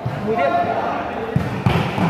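A volleyball thumping as it is hit several times in quick succession, the dull knocks clustered about a second and a half in, with voices around it.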